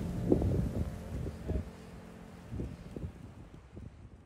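Wind buffeting the microphone in irregular low gusts, weakening and fading out near the end.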